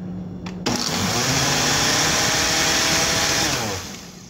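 Countertop blender switched on about two-thirds of a second in, running loud and steady for about three seconds as it blends a strawberry smoothie. It then winds down, its pitch falling, as it is switched off near the end.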